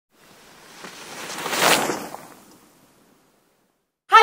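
A single rushing whoosh of noise that swells for about a second and a half, peaks, and dies away within another second, then silence.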